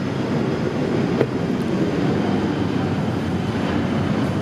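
Steady low rumbling noise, with a single sharp click about a second in.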